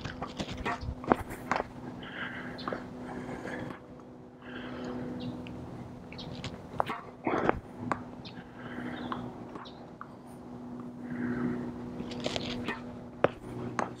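Tennis balls struck with a racket on slow-swing topspin kick serves: a few sharp pops spread out, each with a smaller knock of the ball landing, over a steady low hum.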